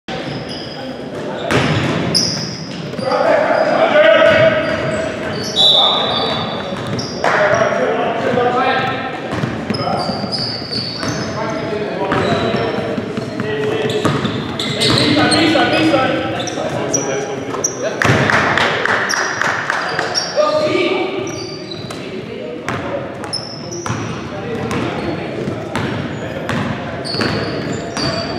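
Basketball game in a gymnasium: the ball bouncing on the hardwood floor, short high squeaks of sneakers, and players calling out, all echoing in the large hall.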